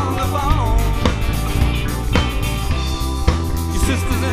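Live band playing a song: drum kit with steady bass-drum and snare hits under bass guitar, electric guitar and keyboard. A sung phrase comes in the first second, then the band plays on.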